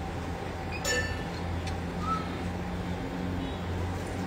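A single light clink of metal or glass about a second in, with a brief ring, over a steady low hum.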